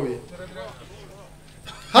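A short pause in a man's speech into a microphone: his phrase ends right at the start and he begins again near the end, with only faint, low background voices in between.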